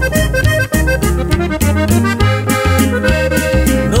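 Instrumental break of a norteño corrido: a button accordion plays a quick run of notes over a steady, pulsing bass line.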